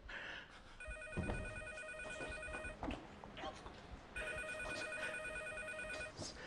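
Desk telephone ringing twice, each ring a rapidly trilling tone about two seconds long with a pause of about a second and a half between. Faint knocks and shuffles run underneath.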